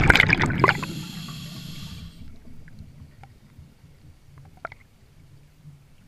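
A scuba diver's exhaled bubbles gurgle out of the regulator at the start and end about a second in. A steady hiss follows, the next breath drawn through the regulator, and stops about two seconds in. Then it is quieter, with a few faint clicks.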